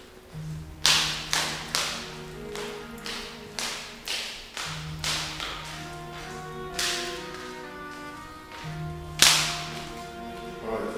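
Dramatic background film music: sustained held notes under a series of sharp, whip-like percussive hits at uneven intervals, the loudest about nine seconds in.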